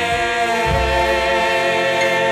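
Doo-wop vocal group singing long held notes in close harmony in a slow 1950s R&B ballad recording, with one shift in pitch about half a second in.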